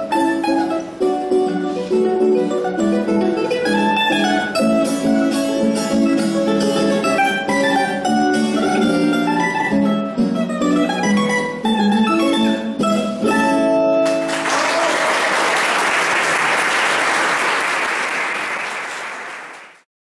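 Colombian bandola and tiple duo playing a bambuco, the bandola's picked melody over the tiple's strummed chords, ending on a final chord about fourteen seconds in. Audience applause follows and fades out at the end.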